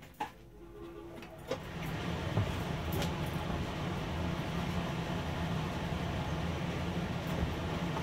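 Workshop exhaust fan switched on and coming up to speed over about the first second and a half, then running steadily: rushing air with a low hum.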